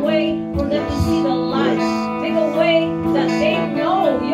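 Live worship music: an electric guitar playing held chords, with a voice singing a wavering melody over them.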